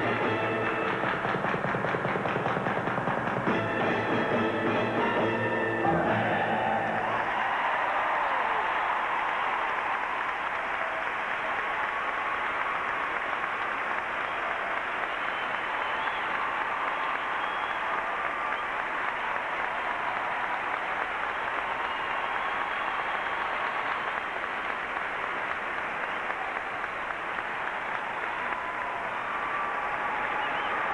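Flamenco-style skating music with percussion comes to an end about seven seconds in. A large arena crowd then applauds steadily.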